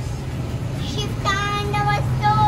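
A young boy's high-pitched voice singing, starting a little past halfway with held notes that break into short phrases. A steady low hum runs underneath.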